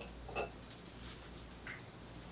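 Faint handling sounds of a glass tea cup and saucer being picked up from a table: a couple of light clicks, about half a second in and again near the end, over quiet room tone.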